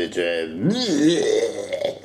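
A man's wordless, strained vocal noise whose pitch swoops up and down, starting about half a second in and lasting over a second.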